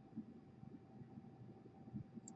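Near silence: faint room tone with a thin, steady electrical hum.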